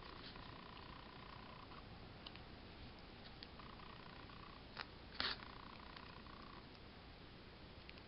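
Very quiet handwork on a spool knitter: a few faint clicks, two louder ones about five seconds in, as the metal hook knocks against the tricotin's wire pins while lifting the loops over.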